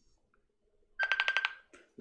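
Mobile phone sounding its alert tone: a rapid pulsing high beep lasting about half a second, starting about halfway through.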